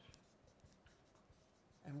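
Dry-erase marker writing on a whiteboard: faint, short strokes one after another.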